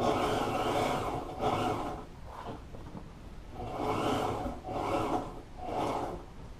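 Electric sewing machine stitching a vinyl headrest cover, running in several short bursts that start and stop, the longest about a second at the start.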